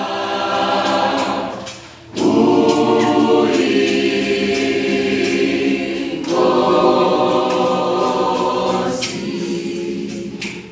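Mixed school choir singing an unaccompanied gospel song in full harmony. The held chords fall away briefly about two seconds in, then the voices come back in together and move to a new chord about six seconds in.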